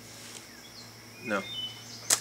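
A few faint, short, high bird chirps in the background, over a low steady hum.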